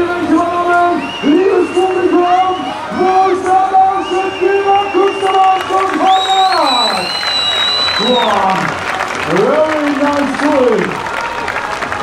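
A man's voice over a loudspeaker, calling out in drawn-out, sing-song shouts, repeated over and over, with a long high call about halfway through that then falls away; crowd applause and cheering underneath.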